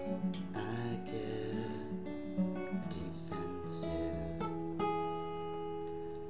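Acoustic guitar with a capo on the second fret, strummed chords ringing out and changing every second or so, with no singing.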